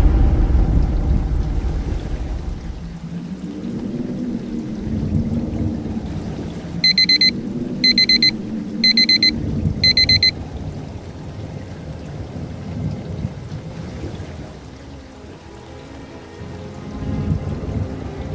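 Thunder rumbling and fading away with a rain-like hiss under a low music drone, then four short electronic beeps about a second apart around the middle.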